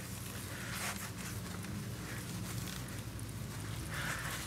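Microfiber towel rubbing over a motorcycle's painted fairing, buffing off wax in soft brushing strokes, over a faint low hum.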